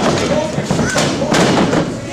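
A wrestler's body hitting the wrestling ring's canvas: two heavy thuds a little after one second in, the second one the louder, amid people shouting.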